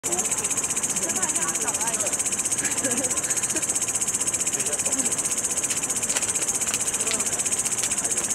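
A dense chorus of night insects: a steady, high-pitched trill with a fast, even pulse. Faint voices of people talking are heard underneath.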